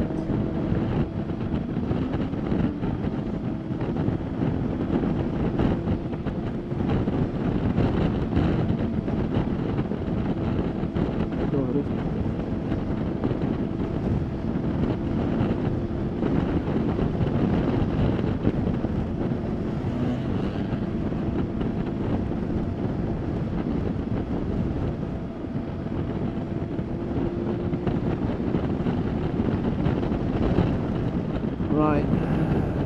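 Steady wind rushing and buffeting over a helmet-side microphone on a motorcycle at cruising speed, with faint steady engine tones from the BMW K1600GT's six-cylinder engine underneath. The wind is still reaching the rider's helmet with the electrically adjustable screen raised.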